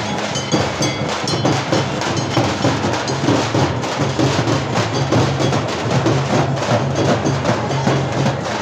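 A group of dappu frame drums beaten with sticks in a fast, dense, loud rhythm that keeps going without a break.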